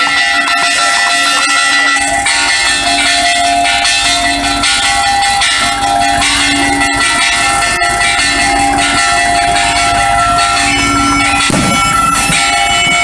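Asturian bagpipe (gaita) playing, its steady drone and chanter notes setting in suddenly and sounding loud and continuous.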